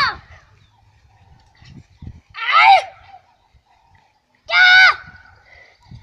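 A child's high-pitched shouts during karate sparring: three short cries, each about half a second long and roughly two seconds apart.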